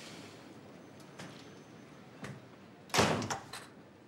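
A couple of faint knocks, then a loud thump about three seconds in, followed quickly by two lighter knocks.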